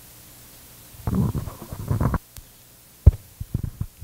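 Handheld microphone handling noise: a low rustling rumble for about a second, then a sharp thump about three seconds in as the microphone is set down on a table, followed by a few light knocks.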